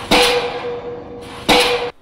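Open-ended diesel pile hammer driving a steel H-pile: two blows about a second and a half apart over a steady hum. The time between blows is what gives the hammer ram's stroke.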